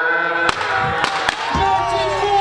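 Crowd shouting the end of a countdown, then three sharp pops in quick succession, from confetti cannons. Music with a deep beat starts about one and a half seconds in.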